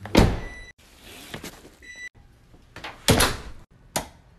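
Car door opened by its handle with a loud thunk just after the start, and a short high beep heard twice. Another loud door thud comes about three seconds in, among abrupt edit cuts.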